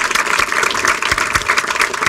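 Audience applauding: many hands clapping, dense and steady.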